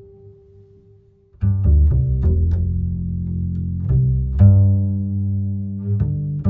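Live string music in a low, cello-like register. A held note fades away over the first second, then about a second and a half in a new phrase begins, with crisp note attacks over sustained low notes.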